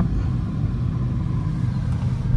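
Road and tyre noise inside the cabin of a moving electric car: a steady low rumble with no engine note.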